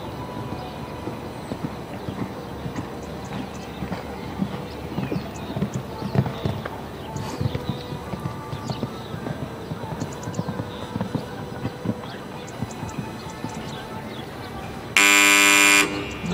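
A horse's hoofbeats cantering over a sand arena, with birds chirping, then near the end a loud electronic tone lasting about a second, typical of the timing signal at the finish of a show-jumping round.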